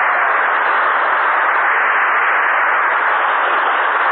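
A loud, steady rushing noise with no tone or pitch in it, holding even throughout.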